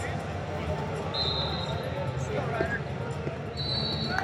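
Hubbub of voices in a large arena, with two long, steady referee whistle blasts, one about a second in and another near the end.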